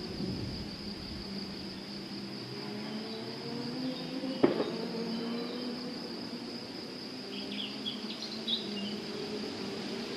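Steady cricket trill under a faint, distant engine drone that slowly rises and falls. A single sharp click about halfway through, and a few short bird chirps near the end.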